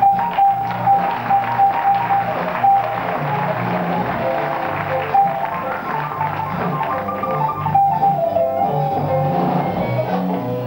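Live small-group jazz. Double bass holds low notes that change in steps, a melodic line of separate notes moves above it, and faint percussive strokes run through.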